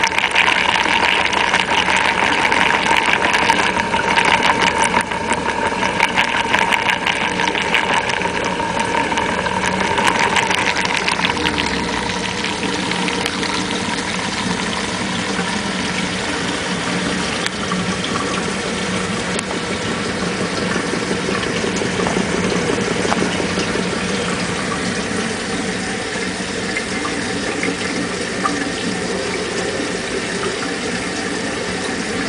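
Homemade Tesla disc turbine built from recycled CDs, driven by faucet water pressure, running steadily with water rushing through it and a whirring hum. It is a little louder over the first ten seconds or so, then holds steady.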